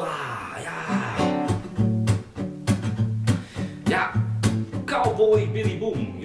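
Acoustic guitar strummed in a steady rhythm, about two strokes a second, with the chords ringing between strokes.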